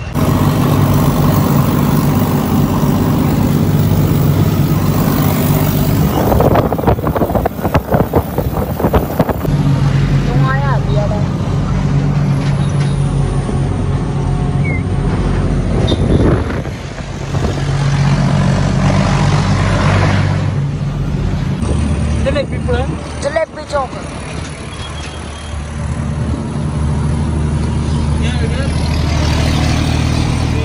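John Deere tractor's diesel engine running steadily under way, with its note changing a few times. There is a stretch of rapid rattling about six to nine seconds in.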